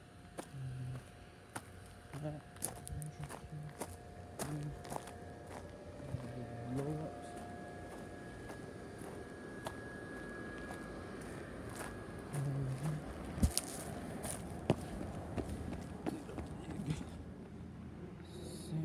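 Footsteps on a dry grass lawn, with scattered clicks and one sharp knock about 13 seconds in. Brief low voice sounds come and go over a faint steady hum.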